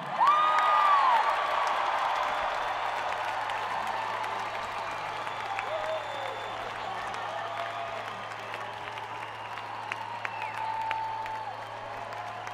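Large concert audience applauding and cheering, with a few whistles cutting through. It is loudest right at the start and eases off slightly over the following seconds.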